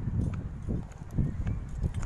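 Footsteps on an asphalt road, with the bumps and rubbing of a handheld phone's microphone as its holder walks.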